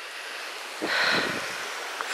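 Small woodland stream flowing over stones, a steady rushing hiss, with a brief louder rustling noise just under a second in.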